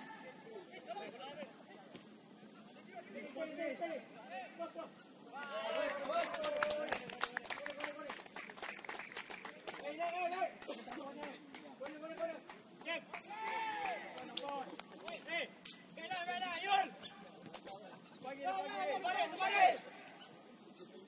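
Players' voices shouting and calling on the pitch during play, too indistinct to make out as words. A dense run of short sharp clicks and knocks comes from about five seconds in, and a steady high-pitched whine runs underneath.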